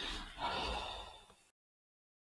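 A man's long breath out close to the microphone, a sigh lasting about a second and a half that swells and then cuts off.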